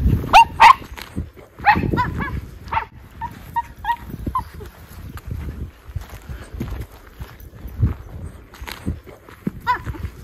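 Miniature schnauzers barking: two sharp barks about half a second in, more barks around two seconds, then a run of short, high yips between three and four and a half seconds, and one more near the end.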